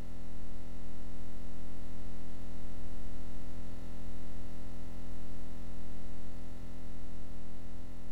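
A steady electronic buzz made of many fixed tones, unchanging throughout and masking all other sound, consistent with the broken camera's faulty audio.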